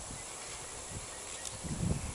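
Butane jet-torch lighter (Xikar) burning with a steady hiss while toasting the foot of a cigar, with a brief low bump near the end.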